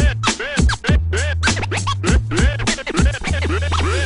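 Hip-hop beat with turntable scratching: quick record scratches sweep up and down in pitch several times a second over a deep bass line and a steady kick drum.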